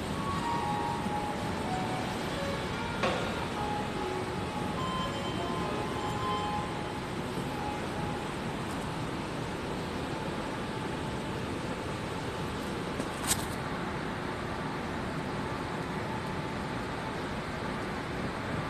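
Steady ambient noise of a large hotel lobby, with faint snatches of tones in the first several seconds and two sharp clicks, a small one about three seconds in and a louder one about thirteen seconds in.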